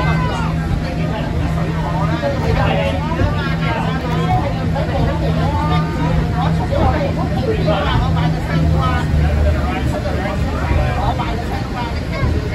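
Passengers chattering inside a moving Peak Tram funicular car, over the car's running noise and a steady low hum that stops about nine seconds in.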